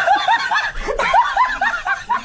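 High-pitched giggling laughter: a quick string of short rising-and-falling 'hee' sounds, several a second.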